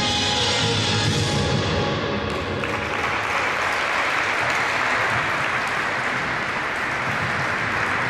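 Ice dance program music ending about two and a half seconds in, followed by steady audience applause.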